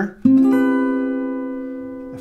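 Acoustic guitar, capoed at the seventh fret, strummed once on an Fmaj7 chord shape about a quarter second in, the chord left to ring and slowly die away.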